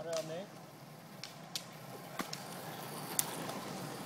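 Roller-ski pole tips striking the asphalt: a few sharp, irregularly spaced clicks as skiers pole up the hill, over a steady rushing noise.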